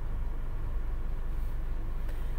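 Steady low background rumble with no distinct events in it.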